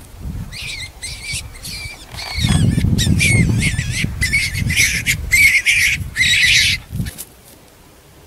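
A bird calling repeatedly in short, high calls, about a dozen of them over six seconds. Under the calls is a low rumble of wind buffeting the microphone, heaviest in the second half, which cuts off near the end.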